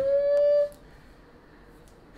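A person's voice holding a long rising 'ooh' that levels off and stops abruptly less than a second in. The rest is quiet.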